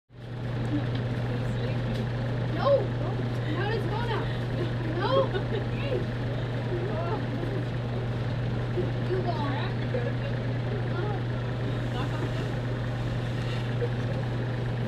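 Faint, indistinct voices of children and adults talking as they approach, over a steady low hum.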